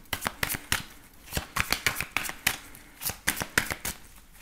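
A deck of oracle cards being shuffled by hand: a quick, irregular run of small card-on-card clicks and slaps.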